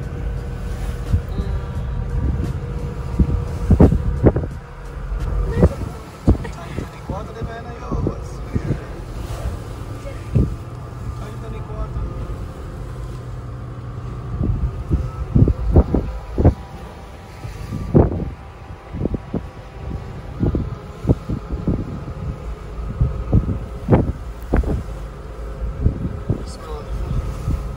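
Steady low rumble of a ferry under way, heard from inside a car parked on its deck, with irregular thumps and knocks throughout.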